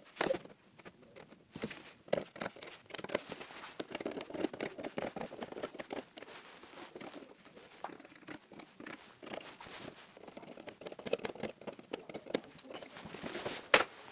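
Pencil scratching marks onto gypsum board through the slots of a plastic hollow-wall distribution box held against the wall, with light irregular scrapes and knocks of the plastic housing on the drywall.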